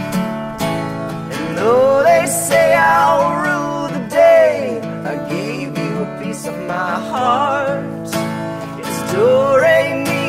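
Acoustic guitar strumming under a harmonica melody whose notes bend and waver, an instrumental break in a folk song.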